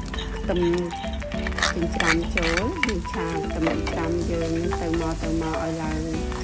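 Small pieces of pork sizzling in hot oil in a nonstick wok, stirred and scraped with a metal spatula, over background music.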